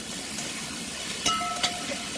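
Pork and onion sizzling as they fry in a cast-iron kazan over high heat, with a metal slotted spatula scraping and clinking against the pot twice past the middle as they are stirred.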